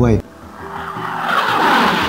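Whooshing transition sound effect that swells over about a second and a half and then begins to fade, with a faint held tone beneath it.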